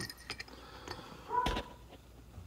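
A steel hand reamer being handled and set down on a workbench: a few faint clicks, then a single knock about one and a half seconds in, with a short high tone heard around the same moment.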